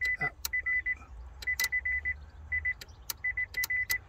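Rapid high-pitched warning beeps from a 2014 Nissan Leaf, coming in short irregular bursts that cut in and out, mixed with sharp clicks, as the body control module's connector is flexed on its board. The beeping switching on and off with the touch points to a poor connection where that connector meets the circuit board.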